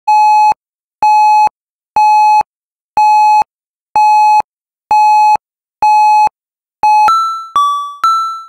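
Rauland Telecenter VI school intercom alert tone: seven loud, steady electronic beeps of about half a second each, one a second, then near the end chime notes that ring and fade, a higher note then a lower one, leading into a weather alert announcement.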